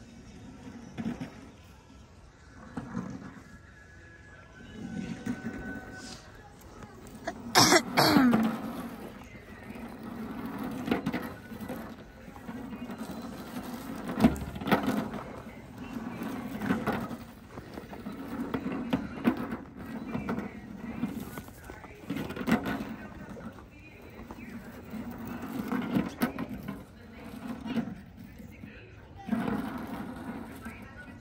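Indistinct voices and shouts of people on a sledding hill, mixed with music. There is one loud cry about eight seconds in.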